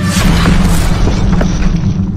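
Intro sound effect of an ice block shattering: a sudden boom with a crashing burst at the start that fades over a second or so, over a steady low drone.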